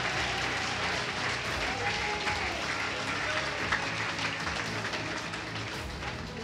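Congregation applauding: dense, steady clapping from many hands that slowly fades.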